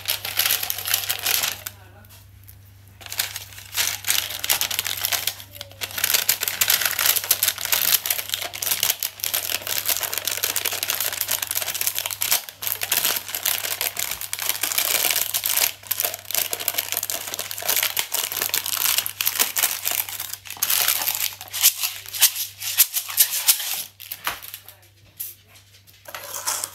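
Baking paper crinkling and rustling as it is stretched tight over a cup and fastened with a rubber band to make a homemade drum. The handling noise is dense and continuous, quieter for a moment about two seconds in and again near the end.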